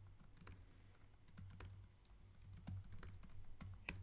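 Faint computer keyboard keystrokes: a few scattered key presses, spaced irregularly.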